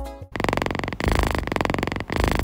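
The last notes of music fade out, then a cat purrs close to the microphone: a fast rumbling pulse that breaks briefly about once a second as the cat breathes.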